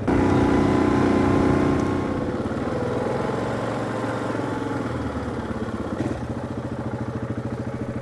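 Four-wheeler (ATV) engine running while being ridden, loudest for the first two seconds and then settling to a steadier, gradually quieter run.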